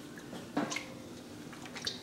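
Faint wet squishes and drips as mozzarella curd is worked with a paddle in hot water: two short sounds, one about half a second in and one near the end.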